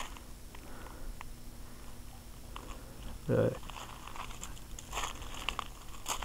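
Quiet, with faint scattered clicks and crunching sounds, and a short "uh" from a man about three seconds in.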